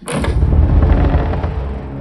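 A deep cinematic rumble: a trailer sound-design hit that starts suddenly on a cut to black and sustains, slowly easing, with a faint high hiss above it.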